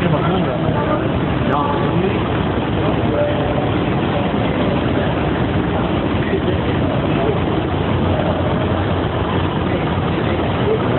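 Chatter from a crowd of bystanders over a steady low engine hum from idling emergency vehicles.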